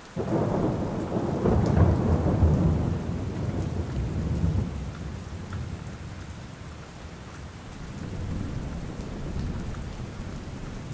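Thunder rolling over steady rain: a long, deep rumble that swells in the first few seconds and dies down about halfway, then a weaker rumble near the end.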